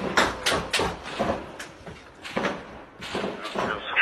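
Gunshots in an irregular string, about three in the first second and then sparser single shots, each with a short echo.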